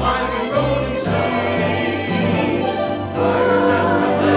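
A church choir singing with instrumental accompaniment, the sound swelling louder just after three seconds in.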